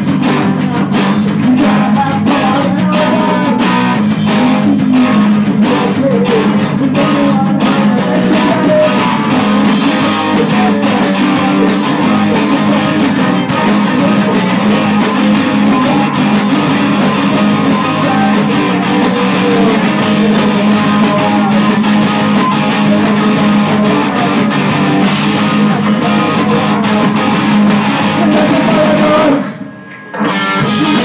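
Rock band playing live in a rehearsal room: guitars strummed over a drum kit with cymbals. Just before the end the band cuts out sharply for a moment, then comes back in.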